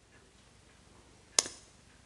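One sharp clink of a kitchen utensil against an enamelware mixing bowl, about one and a half seconds in, with a short ring after it; otherwise very quiet.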